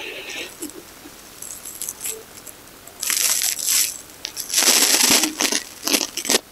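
A person breathing out audibly twice, each breath about a second long, with light rustles and taps of body movement on a yoga mat in between.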